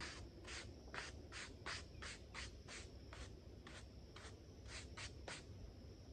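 Stiff-bristled hand brush sweeping sawdust off the top of a chainsaw-carved wooden block in quick, scratchy strokes, about two to three a second. The dust is being cleared so the wood can be marked.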